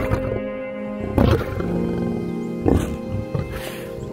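Lionesses growling in about four short bursts spread over a few seconds. Background music with long held tones plays underneath.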